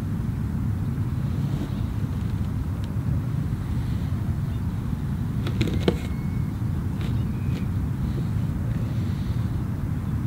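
Steady low outdoor rumble, with a few faint clicks a little past the middle.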